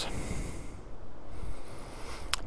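Low, unsteady rumble of wind on the microphone.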